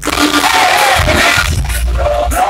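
Loud live concert sound heard from inside the crowd: music from the PA with heavy bass under a dense wash of crowd noise.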